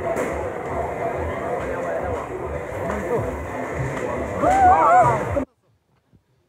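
Indistinct voices of people talking, not picked up as words, with one voice louder a little before the end; then the sound cuts off abruptly.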